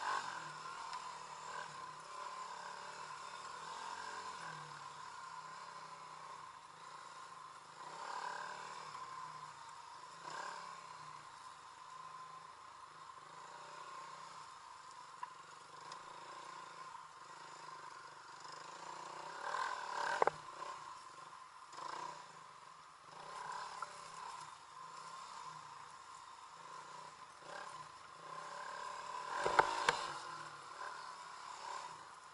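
Dirt bike engine running steadily as the bike is ridden along a trail, its note rising and falling with the throttle. There are a couple of sharp knocks from the bike over the rough ground, one about two-thirds of the way through and one near the end.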